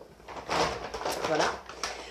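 Rustling and light knocks of items being handled in a bag, starting about half a second in, with a couple of sharp clicks.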